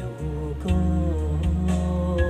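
Electronic keyboard music: a sustained bass line and chords under a lead melody that bends in pitch, with a steady drum beat about two strokes a second.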